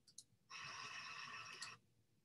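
A faint breath close to the microphone, lasting about a second, just after a soft click; otherwise near silence.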